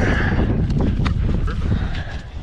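Wind buffeting a body-worn camera's microphone, a heavy low rumble that eases near the end, with a brief voice-like cry near the start and a few sharp clicks.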